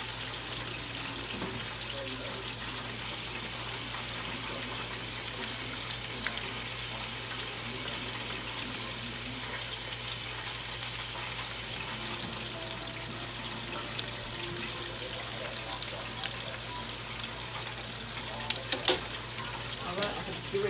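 Breaded chicken wings deep-frying in a pot of hot oil: a steady sizzle. A few sharp clicks near the end.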